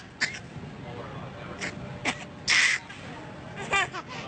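A baby's excited squeals and shrieks in short separate bursts. The loudest is a breathy shriek about two and a half seconds in, and a pitched squeal comes near the end.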